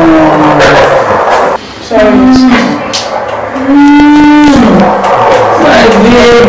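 A woman in labour moaning and crying out in long drawn-out groans of pain, the longest and loudest about four seconds in.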